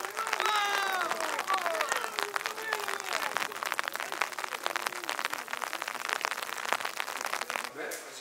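Footballers calling out to each other in training, loudest in the first few seconds, over a dense run of sharp knocks from footballs being kicked and struck. The sound cuts off abruptly just before the end.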